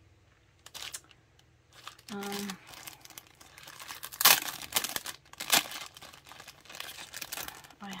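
Clear plastic sleeves crinkling and rustling as they are handled and opened, starting about two seconds in, with two sharp, louder crackles around the middle.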